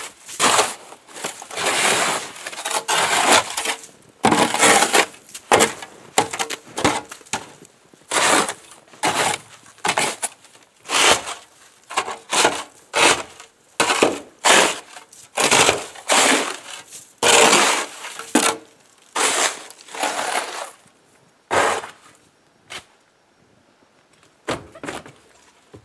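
A long-handled snow brush sweeping heavy, deep snow off a car's body in repeated strokes, about one a second, with the snow crunching as it is pushed off. The strokes thin out and grow quieter near the end.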